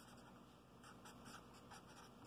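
Faint strokes of a felt-tip marker writing on paper, several short scratches close together in the second half.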